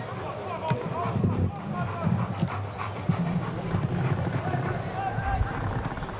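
Indistinct voices talking in the background over a steady low murmur, with no clear single event.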